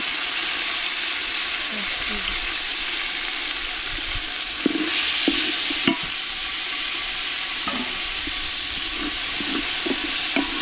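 Chopped tomatoes and onions frying in hot oil in an aluminium pot, a steady sizzle, stirred with a wooden cooking stick. The sizzle swells briefly about five seconds in, with a couple of sharp knocks of the stick against the pot.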